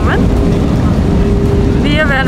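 Loud, steady engine rumble, heaviest in the low end, with a constant hum that sets in about half a second in.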